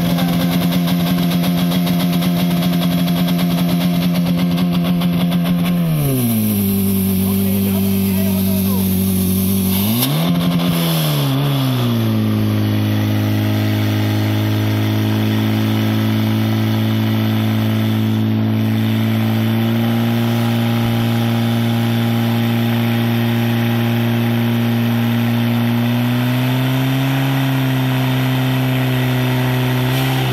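Portable fire pump's engine running fast. About six seconds in its pitch drops sharply, briefly rises and falls again, then settles to a steady lower note as the pump takes on the load of delivering water through the hose lines.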